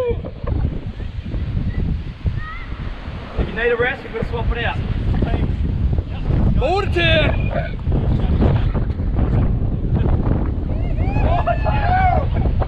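Wind buffeting the microphone over ocean surf breaking against the rocks, a loud steady rumble throughout.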